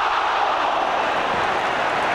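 Large football stadium crowd in a loud, steady roar during a goalmouth scramble, reacting to a shot that has just come back off the crossbar: a near miss.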